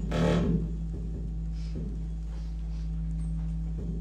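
A steady electronic tone streamed over the internet and decoded without error correction, heard broken up by the network: a brief louder burst of layered tones at the start, then a steady low tone with scattered clicks and glitches.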